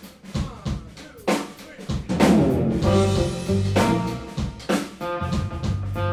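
A live drum kit plays alone with snare, rimshot and bass drum strokes. About two seconds in, the rest of the band comes in: an electric guitar and an electric bass play sustained notes over the drums.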